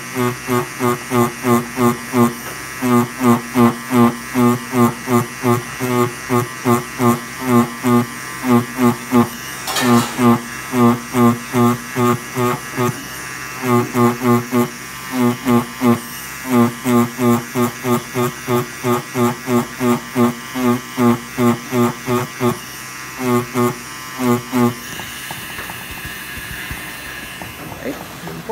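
Tattoo machine running as it shades, its buzz swelling and dipping about two to three times a second with the needle strokes. The buzz stops about a second before the end.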